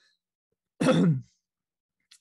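A man clearing his throat once, about a second in.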